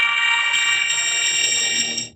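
A logo jingle pushed through vocoder and pitch effects, coming out as a loud, harsh, buzzy held chord of many high tones, alarm-like; it cuts off with a short fade near the end.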